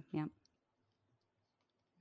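A short spoken "yeah", then near silence with a few faint clicks.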